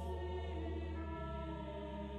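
Slow background music of sustained, choir-like held chords, the low note shifting about a second in.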